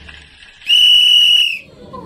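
A single steady high whistle-like tone, just under a second long, that starts and stops abruptly.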